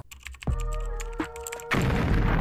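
Edited intro sound effects for an animated title card. A deep bass hit comes about half a second in, with steady ringing tones and a run of rapid clicks. A loud explosion effect starts near the end and is the loudest part.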